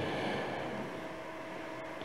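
Faint room tone of a hall in a pause between a man's words into a microphone: a soft, even hiss with a faint steady hum, fading slightly.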